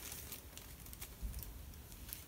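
Faint crinkling and a few light clicks of a small plastic bag being handled, with a soft low thump about a second in.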